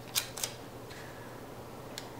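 Paper planner stickers being handled: two short, crisp crackles close together near the start, then only a faint steady low hum.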